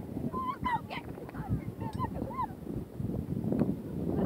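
Gulls calling: a quick run of short squawks in the first couple of seconds, over the low rush of surf.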